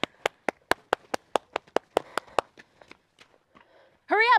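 A person clapping their hands quickly and evenly, about five claps a second for roughly two and a half seconds, then a few softer claps trailing off. The claps are a hurry-up signal to get children moving.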